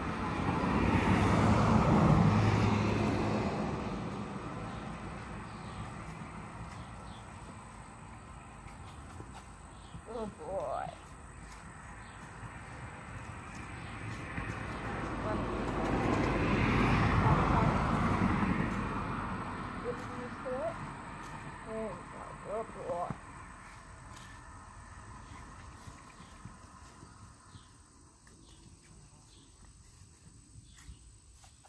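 Two vehicles passing on a road, each swelling and fading over several seconds, the first about two seconds in and the second around the middle. A few short pitched sounds come between and after them.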